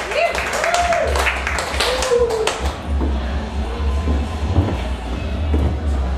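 Audience clapping and cheering over music with a heavy, pulsing bass beat; the clapping and cheering die away about two and a half seconds in, leaving the music.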